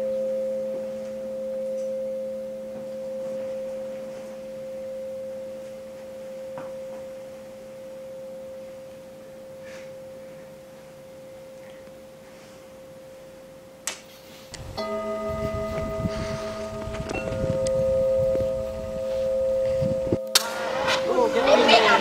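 A sustained ringing tone made of a few steady pitches, pulsing slowly about every second and a half and fading away over some fourteen seconds. After a sharp click it rings out again louder, with a rough rumbling noise under it, and cuts off suddenly about six seconds later.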